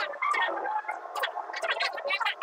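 Several voices chattering and laughing over one another in short, jumbled bursts.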